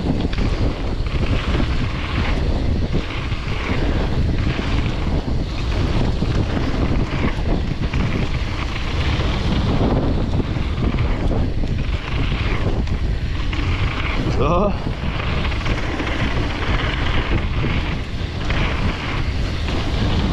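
Wind buffeting the microphone and knobby mountain-bike tyres rolling fast over a dirt trail during a descent: a loud, steady rushing noise that swells and dips a little with the terrain.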